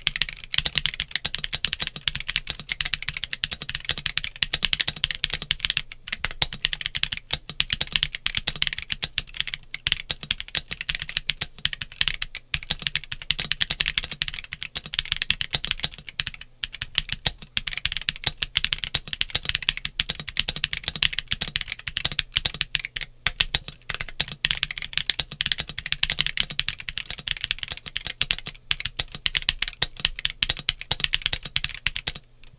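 Continuous typing on a stock Monsgeek M1 mechanical keyboard with its stock polycarbonate plate, Gazzew U4T tactile switches and Akko ASA-profile keycaps: a steady, rapid stream of keystrokes without pause.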